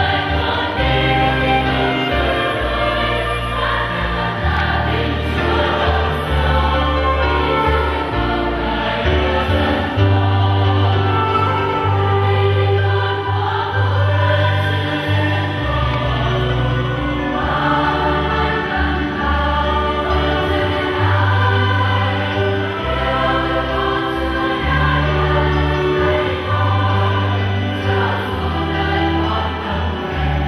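Church choir singing a hymn with instrumental accompaniment, over held low bass notes that change every second or two.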